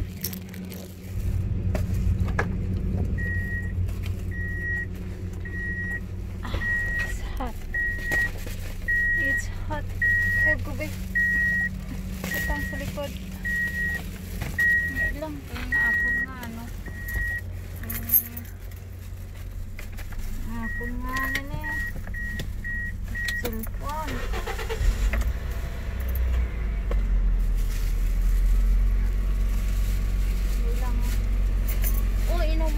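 An electronic beeper repeating a short high beep about once every 0.7 s for some fifteen seconds, then a quicker run of beeps a few seconds later, over a low steady rumble, with rustling and keys handled around a car.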